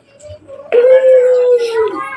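One long howl at a steady pitch, starting about three-quarters of a second in and sagging at the very end.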